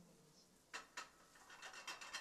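Faint dry rubbing and scraping: two short scrapes about three-quarters of a second and one second in, then a quick, irregular run of small rustling scrapes.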